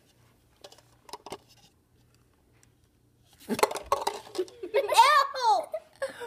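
A girl's wordless vocal reaction to tasting a Bean Boozled jelly bean: after a few faint clicks, it begins loudly about three and a half seconds in and ends in a drawn-out cry that rises and falls in pitch.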